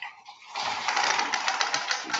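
Rapid rustling, clattering noise of someone getting set up, picked up loudly by a webinar participant's unmuted microphone; it starts about half a second in.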